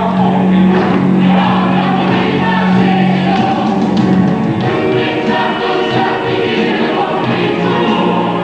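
Live stage-musical choir singing with an orchestra: a low note is held for the first few seconds before the harmony shifts.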